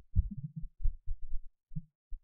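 Computer keyboard being typed on: a quick, uneven string of soft, dull key thumps, about eight in two seconds.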